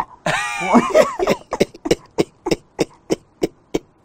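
A man's drawn-out vocal exclamation, breaking into a run of short, sharp laughing pulses, about three to four a second.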